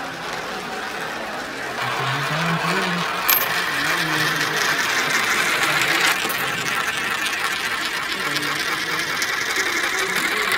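A penny and a dime rolling round a spiral coin funnel: a continuous rolling whir that grows louder about two seconds in, with a sharp click about three seconds in.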